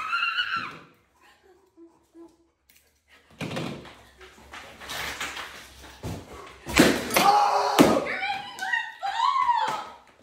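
Latex balloons bursting as thrown darts hit them: two sharp pops about a second apart near the middle, among scattered knocks, followed by excited shouting.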